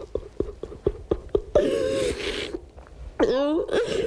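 A man crying hard: a run of short gasping sobs, a longer sobbing cry with a heavy breath about one and a half seconds in, and a cry that rises in pitch a little after three seconds.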